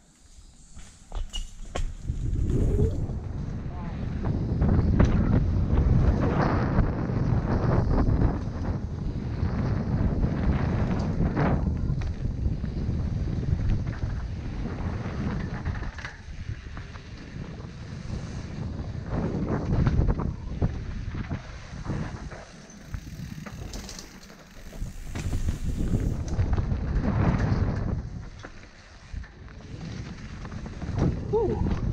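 Mountain bike riding down a dirt forest trail, heard from a camera mounted on the bike: wind rushing over the microphone with tyre noise and scattered knocks and rattles from bumps. The noise rises and falls over the run.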